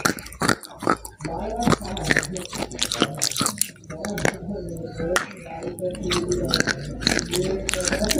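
Close-miked biting and chewing of a crumbly white food, with many sharp crunchy clicks. A pitched, voice-like sound runs under the chewing for stretches of a few seconds.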